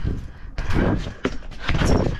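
Trick scooter bouncing on a trampoline mat: three or four heavy thuds about half a second apart, each with a rushing rattle as the rider lands and springs off again.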